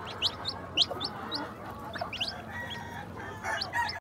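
Young game-fowl chicks peeping: short, high cheeps that rise quickly in pitch, several birds calling a few times each second.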